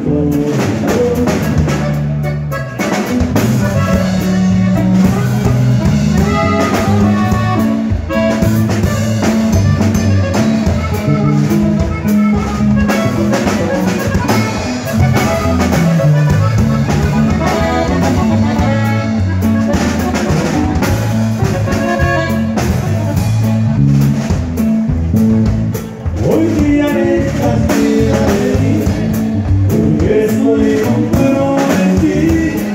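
Live norteño band playing an instrumental passage: accordion carrying the melody over guitar, electric bass and drums keeping a steady beat.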